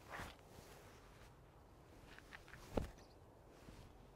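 Mostly quiet outdoor background with a few faint sounds of a person moving through hand strikes: a soft swish at the start, a couple of tiny clicks, and one soft thump a little before three seconds in, like a footstep.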